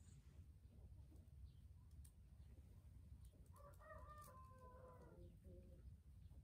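A distant rooster crowing once, a call of about two seconds starting a little past halfway, faint over a low steady rumble.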